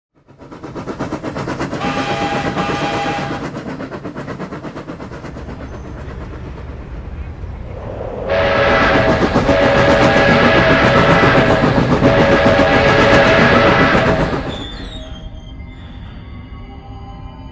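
Steam locomotive running, with a short whistle blast about two seconds in, then a long chime whistle blast of several tones sounding together from about eight to fourteen seconds, credited tentatively as a New York Central five-chime whistle. It gives way to quieter music near the end.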